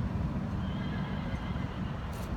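A horse whinnying faintly for a little over a second, starting about half a second in, over a low steady rumble.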